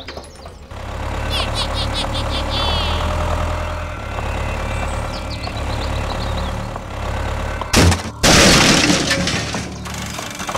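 Tractor engine running steadily from about a second in. About eight seconds in, a sharp click and then a loud crash lasting about a second.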